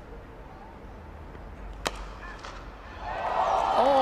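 A cricket bat strikes the ball with one sharp crack just under two seconds in. About a second later, cheering and applause swell up as the shot is caught by a diving fielder.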